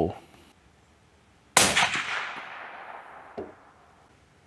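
A single suppressed rifle shot from a Mossberg Patriot .308 bolt-action rifle fitted with a Silencer Central Banish 30 suppressor. It comes as one sharp report about one and a half seconds in, followed by a long fading echo, and a short soft knock comes near the end.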